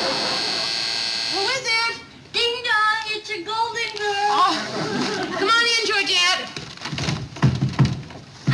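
Studio audience laughing for about a second and a half, then a few seconds of voices and a few dull thumps near the end.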